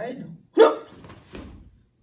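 A man's single short, sharp shout (kiai) as he drops into a martial-arts stance, about half a second in. A fainter, brief sound follows about a second later.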